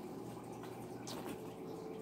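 Quiet room tone with a low steady hum, and a faint brief rustle of a paper coffee filter being handled about a second in.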